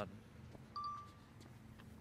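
A single short electronic beep, one flat tone about half a second long, about three-quarters of a second in, over faint quiet background.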